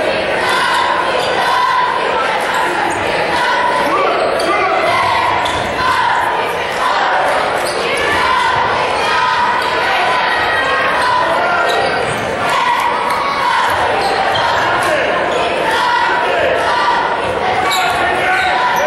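Live sound of a high school basketball game in a gymnasium: a steady din of indistinct crowd voices, with a basketball bouncing on the hardwood floor and short knocks of play, echoing in the large hall.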